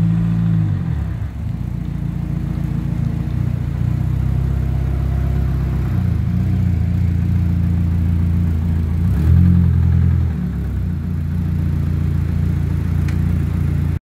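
Peugeot 106's engine running at low revs while the car is manoeuvred into a parking space, the revs rising briefly about nine seconds in.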